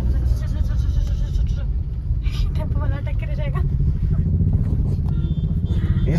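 Steady low rumble of a car's engine and tyres heard from inside the cabin while driving in traffic, with brief talk in the middle.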